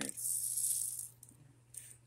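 Small hard-plastic Bakugan toy figures rattling and clicking against each other as they are handled, a hissy rattle lasting about a second.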